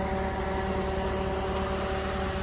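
Steady running hum of the Hummer H2 with its 6.0 LS V8: a low rumble with a few faint steady tones over it, unchanging throughout.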